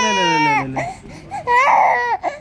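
Infant crying: a long wail that falls in pitch and breaks off just under a second in, then a second cry starts about a second and a half in.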